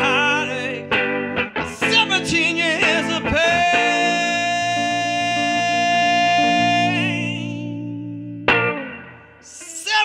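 Live blues performance: a male singer with a hollow-body electric guitar. About three and a half seconds in, one long note is held steady for several seconds, then fades away near the end.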